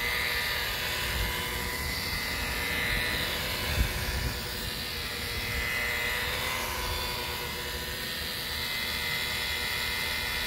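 DeWalt DWP849X rotary buffer running at a steady speed, its wool compounding pad working heavy-cut compound into oxidised fiberglass gelcoat, with a steady motor whine over the rush of the spinning pad. A brief thump about four seconds in.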